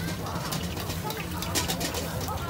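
Busy open-air market ambience: distant chatter of shoppers and vendors over a steady low hum, with scattered light clicks and rustles.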